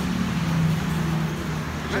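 Steady low engine hum of road traffic.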